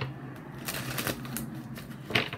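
Tarot cards being shuffled by hand: a papery rustle with a few quick snaps of the cards about a second in.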